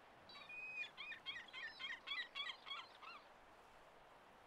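A small bird singing faintly: a short whistled note, then a quick run of repeated chirping notes, about five a second, stopping after about three seconds.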